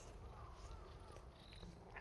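Near silence: faint outdoor background, with a brief faint sound right at the end.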